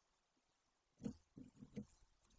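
A golden eagle chick picking at nest sticks with its beak: a few short, faint rustles and scrapes starting about a second in, against near silence.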